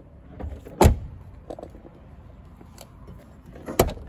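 Car door clunks on a 1989 BMW 316i: a door shut with a sharp clunk about a second in, the loudest sound, and another door-latch clunk near the end, with light clicks of handling between.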